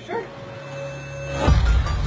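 A dog barking, starting suddenly and loudly about one and a half seconds in.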